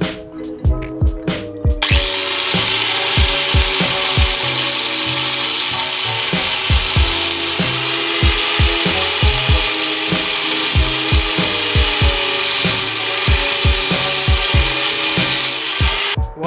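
Angle grinder working steel: a loud, steady high whine with hiss, starting about two seconds in and stopping abruptly near the end, over background music with a steady beat.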